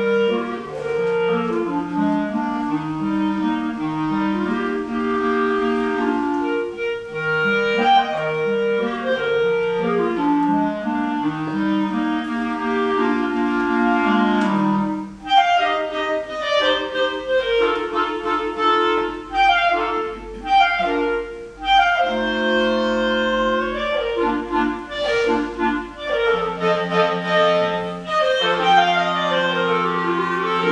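Clarinet quartet playing: four clarinets in layered, sustained harmony, with a short break about halfway before the phrases resume in shorter, quicker notes.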